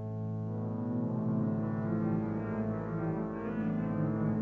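Organ playing sustained full chords over a held low pedal note; the chord grows fuller with more notes from about a second in.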